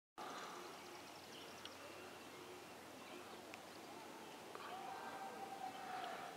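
Faint outdoor ambience over calm water, with a few faint, distant bird chirps.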